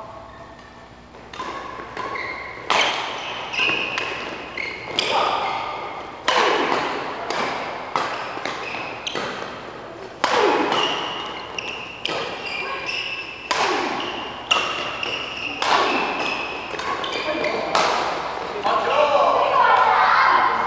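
Badminton rackets hitting a shuttlecock in a doubles rally: a steady run of sharp hits, about one or two a second, each echoing in the large hall. Voices come in near the end.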